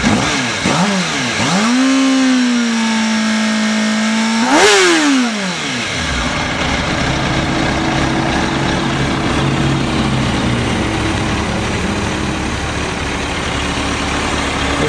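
The stock inline-four engine of a 2006 Kawasaki ZX-6R 636, warmed up, being revved. Two quick blips are followed by about three seconds held at a steady high rpm, then one sharp rev about four and a half seconds in, after which it drops back to a steady idle.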